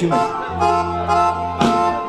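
Live band striking up a dance tune: an accordion holds long chords over a steady bass note. It comes in about half a second in and changes chord shortly before the end.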